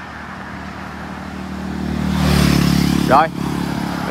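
A motor vehicle passing close by on a highway: its engine and tyre noise build over about two seconds, peak, then fall away quickly.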